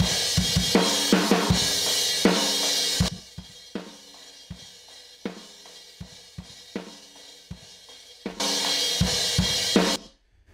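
Mono room-mic recording of a drum kit played through two RS124 compressor plugins summed together. About three seconds in, the polarity of one is flipped and the drums drop sharply to a faint residue of hits: the two plugins nearly cancel, leaving only their small differences. Near the end the drums jump back to full level.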